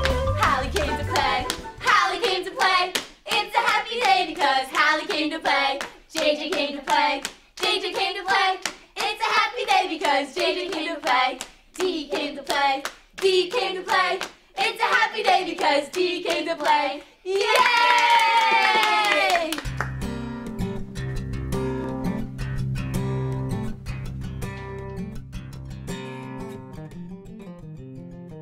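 Children's-video theme music. Short sung vocal phrases with sharp claps are followed, about 18 seconds in, by a long falling glide, then instrumental backing with a steady bass line.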